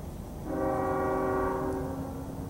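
A horn sounding one steady blast, a chord of several tones held for about a second and a half, starting about half a second in.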